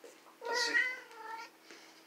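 A domestic cat meowing once, a drawn-out meow that starts about half a second in and lasts about a second.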